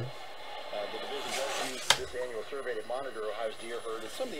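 An AM broadcast voice playing through the Sangean PR-D6 portable radio's small speaker. It sounds thin and tinny over a steady hiss of static, with one sharp click about two seconds in.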